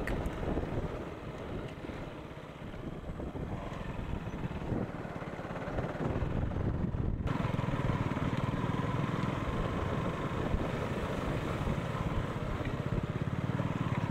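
Motorcycle engine running at low speed on a rough dirt track, with wind noise on the microphone. The sound changes abruptly about seven seconds in, then runs steadier and a little louder.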